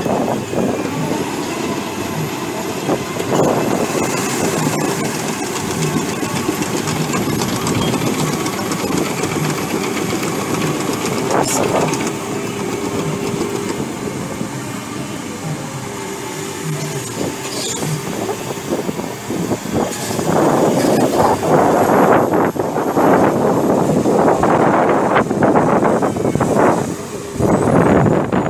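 Cat amphibious excavator's diesel engine running while its pontoon track chains clank and rattle as it drives through the water. The noise grows louder and rougher, with gusty bursts, over the last several seconds.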